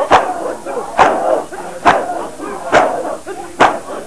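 A crowd of men beating their chests in unison, one sharp slap about every 0.9 seconds, five in all, with shouted chanting between the strikes.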